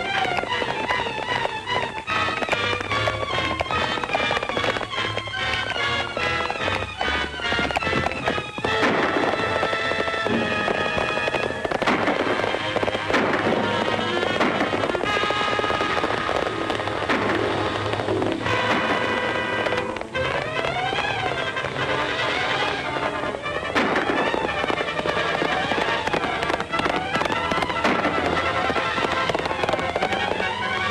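Orchestral film score playing a fast, agitated chase cue over a dense clatter of sharp impacts, fitting galloping horse hooves. In the second half, a figure rises and falls in pitch about once a second.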